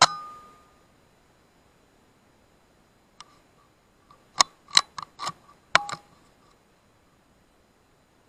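A single shot from a .25 BSA Scorpion air rifle: a sharp crack with a brief metallic ring. About three seconds later comes a run of half a dozen quick metallic clicks and clacks as the bolt is worked to load the next pellet.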